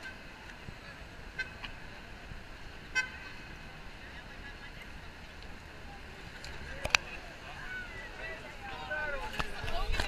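Busy city street ambience with a steady traffic hum and two short car-horn toots, about one and a half and three seconds in. A sharp click comes near seven seconds, and passersby's voices rise toward the end.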